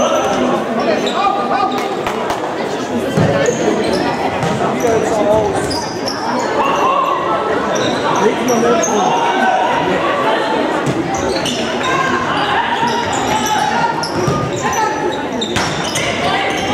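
Ball kicked and bouncing on a sports-hall floor during an indoor youth football match, with short high squeaks from players' shoes and shouting voices, all echoing in the large hall.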